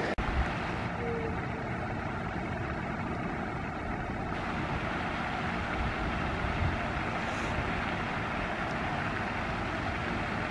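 Steady outdoor background noise: a low rumble of distant traffic mixed with wind on the microphone.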